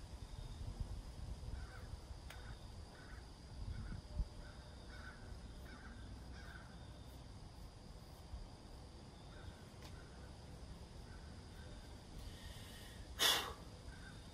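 Faint, distant bird calls, short ones in small groups, over a low steady rumble. A short loud hiss, like a sharp breath, comes near the end.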